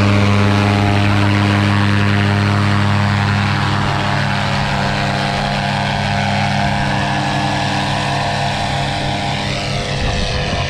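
Tandem paramotor's engine and propeller running at full takeoff power, a loud steady drone. Over the second half it gradually fades as the craft lifts off and climbs away.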